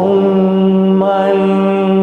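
A male singer holding one long sustained note at a steady pitch with a slight vibrato, breaking off just after the end.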